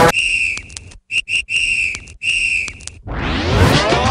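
A whistle blown at one steady high pitch in a rhythmic pattern of blasts, one long, two short, then two long, as a break in the dance track. Music with a rising sweep comes back in about three seconds in.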